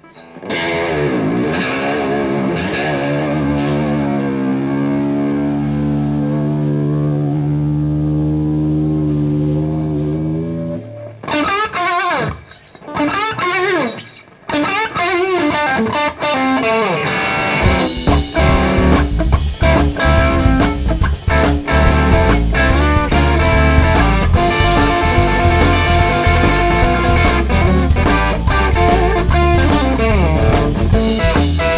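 Distorted electric guitar from a sunburst Stratocaster-style guitar plays a blues-rock intro: wavering bent notes, then a long sustained note, then a few broken bent phrases with short gaps. About two-thirds of the way through, drums and bass guitar come in and the full band plays a steady driving groove.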